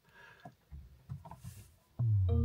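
Faint clicks and low bumps in a quiet car cabin as the car is switched on with its start button; no engine is heard running.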